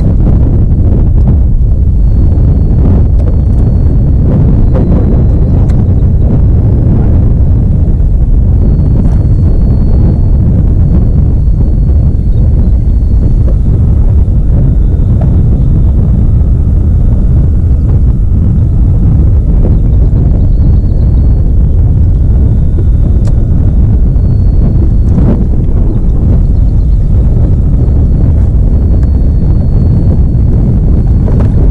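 Wind buffeting the camera's microphone: a loud, steady low rumble with no letup.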